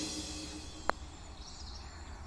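A single sharp click of a putter striking a golf ball about a second in, over faint outdoor ambience with faint birdsong.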